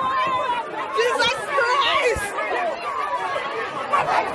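Several people's voices talking over one another, too jumbled to make out words.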